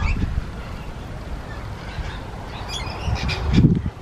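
A steady low rumble on the microphone, with a few faint, short bird chirps near the start and again about three seconds in, and a brief louder rumble just before the end.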